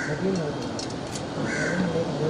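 A bird calls twice, short calls about a second and a half apart, over a murmur of people's voices.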